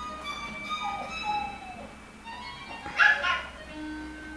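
Film score music playing from a television, with a dog barking briefly about three seconds in.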